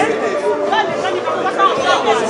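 Crowd chatter: many people talking at once in overlapping, unintelligible conversation.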